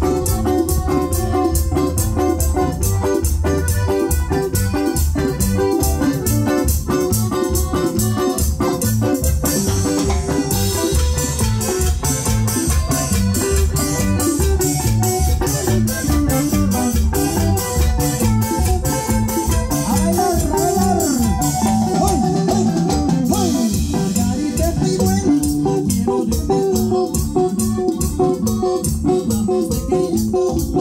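Live cumbia band playing a dance tune on keyboard, accordion, electric guitars, bass guitar and drum kit, with a steady dance beat.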